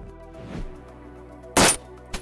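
A single sharp rifle shot about one and a half seconds in, over quiet background music.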